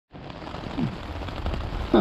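Heavy rain falling on a tent, heard from inside: a dense, steady patter of drops.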